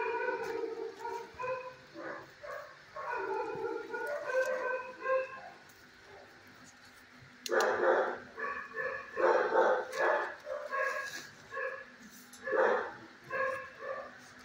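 Dogs barking in short, high-pitched calls in two bouts, the second and louder one starting about 7.5 seconds in.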